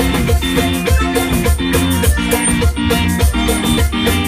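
A live band playing an instrumental passage, with button accordion, electric guitar, bass and drum kit with percussion, over a steady driving beat.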